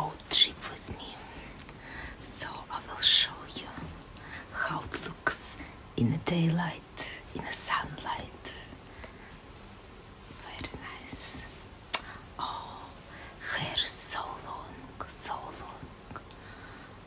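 A woman whispering in short phrases, with sharp hissing on the consonants.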